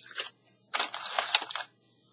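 Plastic wax-melt clamshell pack crackling and crunching as it is handled: a brief crackle at the start, then about a second of crinkling with small clicks.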